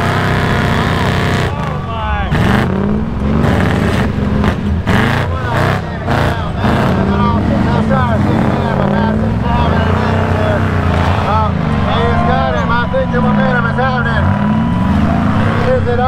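Off-road rig engines revving hard under load in a tug of war, their pitch rising and falling as the tires spin in deep sand. Voices are heard over it, more plainly in the last few seconds.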